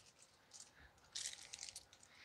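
Small plastic bag of screws crinkling as it is handled: a brief rustle a little past halfway, after near quiet.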